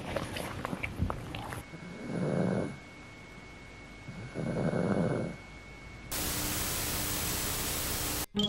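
A pug gnawing a chew toy with small clicks, then, after a cut, a sleeping pug snoring: two long snores about two seconds apart. About six seconds in, a steady hiss of TV static takes over.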